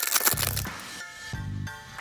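Foil wrapper of an Upper Deck hockey card pack torn open, a crackling rip in the first half-second followed by quieter crinkling, over background music.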